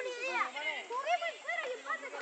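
Several children shouting and calling out over one another while playing football.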